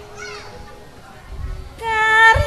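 A brief gap in a live campursari song: the held sung note breaks off at the start, leaving crowd voices with a few short high calls, then a new held note comes back in near the end as the music resumes.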